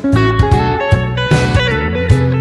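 LSL Instruments Topanga electric guitar played bottleneck-style with a slide: a blues phrase of quickly picked notes, several gliding between pitches, over a low ringing bass note.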